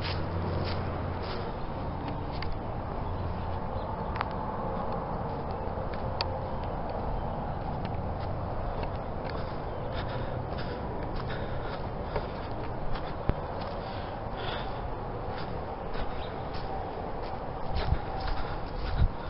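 Footsteps through grass and dry leaf litter, scattered light crunches and ticks over a steady outdoor background noise. A low hum fades out in the first second and a half.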